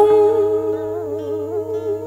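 Vietnamese poetry chanting (ngâm thơ): a long held, wavering sung note over soft instrumental accompaniment, dipping slightly in loudness after the first half second.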